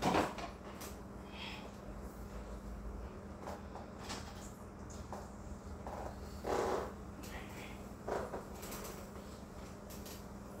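Quiet kitchen handling sounds over a steady low hum: a wheelchair rolling across the floor and a few soft knocks and shuffles, the loudest about six and a half seconds in.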